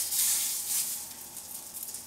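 Turkey sausage meat sizzling as it is squeezed from its casing into a preheated, lightly oiled skillet, loudest in the first second and easing off after.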